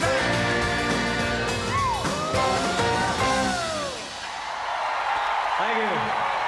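Live rock band holding its final chord, with a voice whooping in sliding glides over it, until the music stops about four seconds in; the audience cheers and applauds after it.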